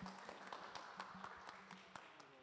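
Faint, scattered applause from a small audience, a thin patter of many claps.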